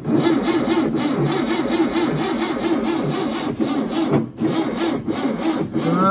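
Freshly rebuilt air-cooled VW Type 3 flat-four being cranked on its starter with starter spray in the carburettor, turning over rhythmically and not yet firing properly. The cranking breaks off briefly about four seconds in, then carries on.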